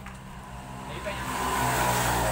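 Engine of a passing motor vehicle, growing louder through the second half.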